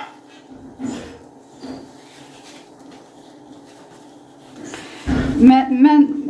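Faint, soft handling sounds of salt being added from a glass jar to flour in a plastic mixing bowl, over a low steady hum. Near the end there is a low thump, then a woman's voice.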